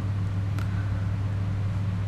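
A steady low background hum with a faint hiss over it, and one faint tick about half a second in.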